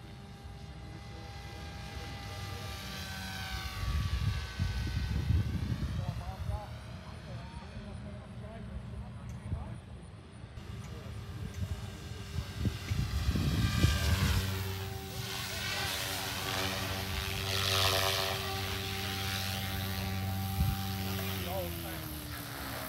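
Goosky RS4 electric RC helicopter flying passes: the rotor and motor whine rises and falls in pitch as it goes by, twice. From about two-thirds of the way in it holds a steady hum as it comes down low. Two spells of low rumble come in, a few seconds in and again just before the steady hum.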